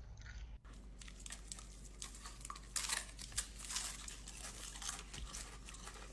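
A person chewing a dry, crumbly bud close to the microphone: dense crunching and crackling, loudest about three seconds in.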